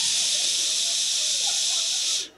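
A man's long, steady 'shhh' hiss made with his mouth into a microphone, imitating an aerosol can of air freshener being sprayed.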